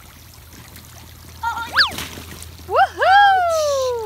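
A high voice cries out twice in excitement as the girl slides down the wet water slide: a short cry that leaps up in pitch, then a long loud 'wheee' that falls in pitch. Water trickles faintly on the slide.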